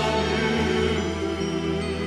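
Live praise-and-worship music: held instrumental chords over a steady bass note, with no singing.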